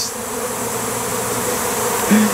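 A swarm of honeybees in flight, a steady dense buzzing.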